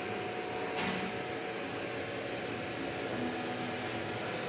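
Steady background hum with hiss, holding one level throughout.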